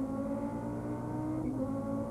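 Race car engine heard on board from a camera mounted on the back of an Audi touring car, running at a steady note as the field rolls toward the start.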